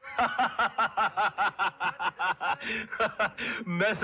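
A man laughing heartily: a long run of quick, even laughs, about six a second, before speech resumes near the end.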